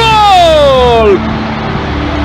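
A football commentator's long, drawn-out shout of "Goal!" in Greek, its pitch falling steadily for about a second before it gives way to a quieter background.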